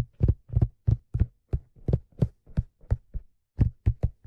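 Fingertips tapping on a black leather fedora: a steady run of dull, low taps, about three a second, with a brief pause a little after three seconds in.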